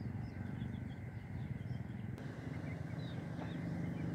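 Faint, scattered peeping of young chicks over a low, steady rumble.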